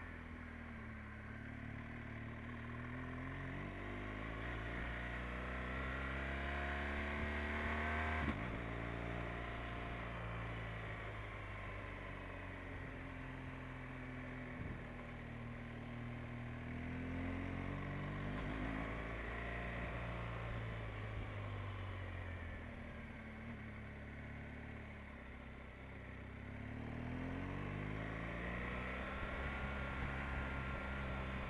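Motorcycle engine heard from the rider's seat while riding. The revs climb steadily for about eight seconds, drop suddenly at a gear change, then rise and fall with the throttle.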